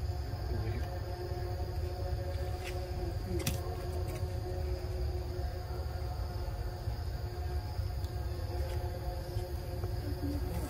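Outdoor forest ambience: insects drone steadily at a high pitch over a constant low rumble, with a couple of faint clicks about three seconds in.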